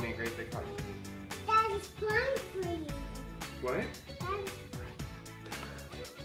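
Background music with a steady beat, over which a young girl cries in a few short, rising-and-falling sobs.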